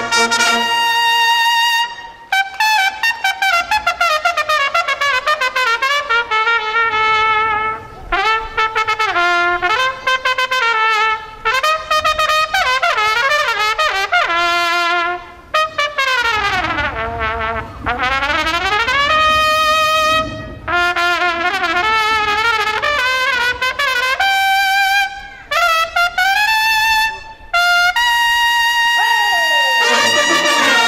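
Bersaglieri fanfare of trumpets and lower brass playing a tune in short phrases separated by brief breaks. About halfway through the line runs down in pitch and back up again.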